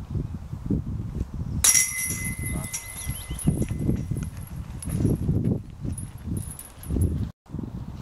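A disc putted into a metal disc golf basket hits its steel chains about one and a half seconds in: a sudden metallic crash, then chain ringing that fades over several seconds. Wind rumbles on the microphone throughout.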